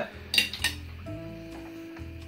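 Cutlery clinking against a plate twice in quick succession, about half a second in, as a bite is cut from a bean burger. Soft background music with held notes follows.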